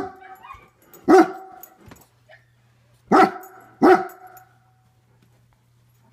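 German Shepherd barking: four separate barks, one at the very start, one about a second in, and two close together about three seconds in, then the barking stops.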